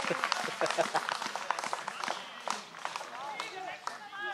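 Men's voices calling out and chatting on a football pitch just after a goal, with scattered short sharp claps.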